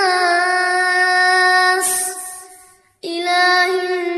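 A child's voice reciting the Quran in melodic murottal style, holding one long drawn-out vowel for about two seconds. The note fades away to a brief silence about three seconds in, and then a new long note begins.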